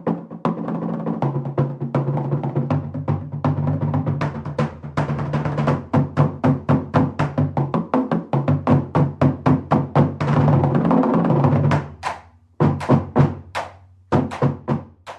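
Marching-band bass drum line: several bass drums tuned to different pitches playing a fast rhythmic pattern, the low notes stepping from drum to drum so that the line carries a melody. The strokes pause briefly near the end, then resume.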